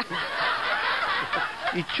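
Several people laughing at once, starting suddenly and dying down after about a second and a half, with a short word spoken near the end.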